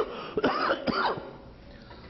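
A person coughing and clearing their throat: a few short coughs in quick succession over the first second or so.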